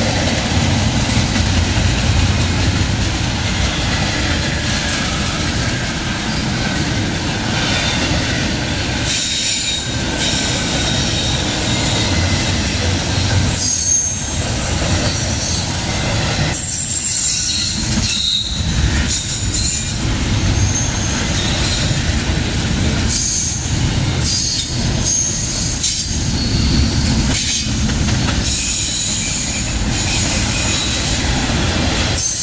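Double-stack intermodal well cars rolling past: a steady low rumble of steel wheels on rail, with high-pitched wheel squeal coming and going from about nine seconds in.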